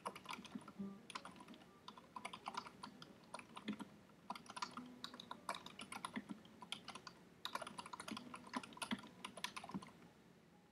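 Typing on a computer keyboard: quick runs of keystroke clicks with short pauses between them, as a sentence is typed out.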